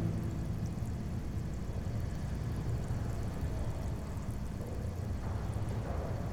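Steady low background rumble of room tone, with the tail of background music fading out in the first moment.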